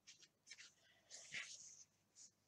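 A few faint rustles of hands handling a fluffy wool-batt tail, the longest in the second half.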